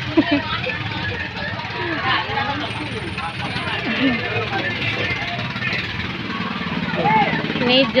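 Busy market ambience: many overlapping voices of shoppers and vendors, none close, over a steady low hum of motorbike engines.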